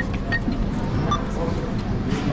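Short electronic beeps from an ATM keypad as a withdrawal amount is keyed in and confirmed, a few of them in the first half, over a steady hum of terminal-hall background noise.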